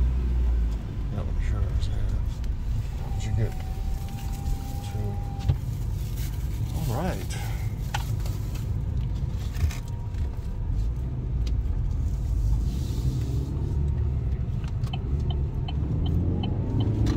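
Car engine and road rumble heard from inside the cabin as the car pulls away and drives out onto the road. A steady tone sounds for about two seconds a few seconds in, and a few light clicks come near the end.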